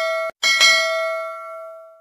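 Notification-bell chime sound effect of a subscribe-button animation. A bright ringing chime cuts off about a third of a second in. It is struck again twice in quick succession and rings on, fading away near the end.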